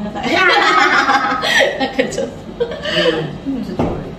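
Women's voices chatting and chuckling.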